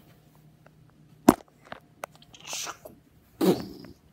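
A single sharp knock about a second in, then a breathy hiss and, near the end, a short breathy vocal sound from a child, over light handling noise.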